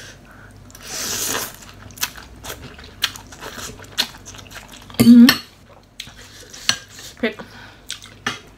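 A person eating instant noodles in soup: a slurp about a second in, then chewing and sharp clicks of a metal fork and spoon against a glass bowl, with a short hummed "mm" about five seconds in.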